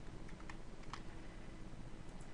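A few faint, sharp computer keyboard and mouse clicks over a steady low hum and hiss.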